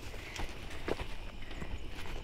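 Footsteps on a dirt track and grass: a few soft, irregular scuffs over a low steady rumble.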